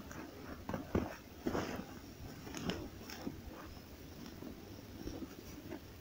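Faint, irregular crunching and rustling of movement on snow, with a few sharper clicks about one second and again about three seconds in.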